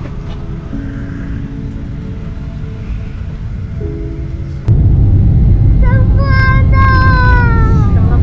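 Jet airliner cabin noise from a Boeing 737: a heavy low rumble that jumps much louder about halfway through, as at take-off power. Over the last two seconds a high, wavering sound falls slowly in pitch.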